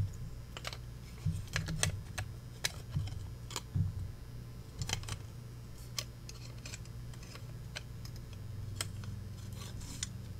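Small metal cabinet hinges clicking and tapping against each other and a ruler as they are handled and lined up, in irregular light clicks, most of them in the first half, over a steady low hum.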